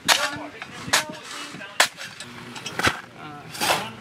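A shovel scraping and striking packed dirt in about five short, sharp strokes, roughly one a second. Faint voices can be heard behind it.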